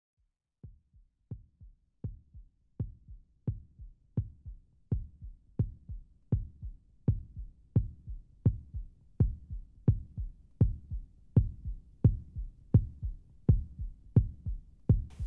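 Heartbeat sound effect: a steady lub-dub of low thumps, about 85 beats a minute. It fades in from silence and grows louder.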